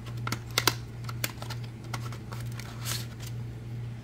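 A small cardboard box being opened by hand and a clear plastic clamshell tray pulled out of it: scattered light clicks and a short rustle of cardboard and plastic, over a steady low hum.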